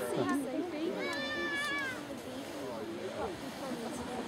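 People talking in the background, with a single high, drawn-out cry lasting about a second, about a second in.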